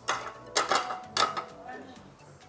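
White ceramic plates being stacked onto a pile, clinking against each other: a few sharp clinks with short ringing in the first second and a half.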